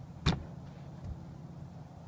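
A golf club strikes a ball off a driving-range hitting mat: one sharp crack about a quarter second in.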